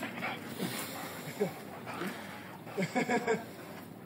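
A dog whining and yipping in short calls while playing, a few spread through and a quick run of them about three seconds in.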